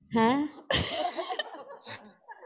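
A woman says "Ha?", then gives a sudden, cough-like outburst into a handheld microphone that breaks into breathy laughter.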